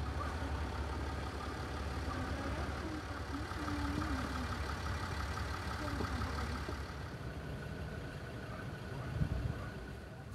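An engine idling steadily with a low, even rumble.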